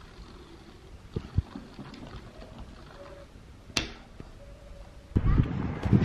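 A plastic bubble tea cup handled on a wooden table: two light knocks, then a sharp snap near the four-second mark. About a second from the end comes loud wind buffeting the microphone outdoors.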